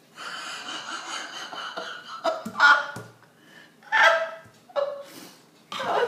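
A woman's breathy non-speech vocal sounds: three short bursts of breath or laughter, after about two seconds of rustling.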